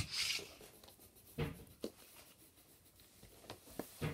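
Pencil scratching on sketchbook paper, with a few light knocks scattered through as pencils and a pencil case are handled.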